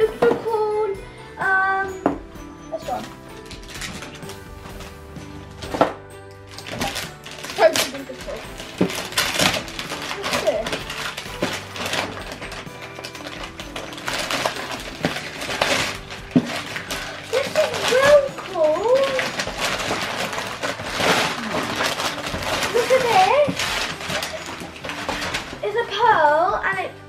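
Wrapping paper tearing and crinkling as a present is unwrapped, in repeated rough crackles from a few seconds in, over background music. A few short voice sounds come near the end.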